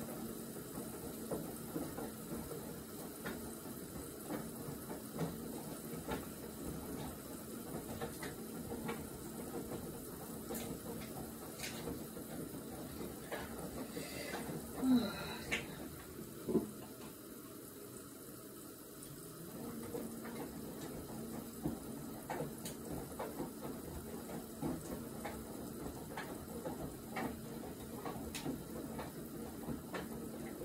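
Faint water running in a kitchen, with scattered light clicks and knocks of utensils and crockery; a short squeak about halfway through, and the water sound dropping away for a few seconds just after.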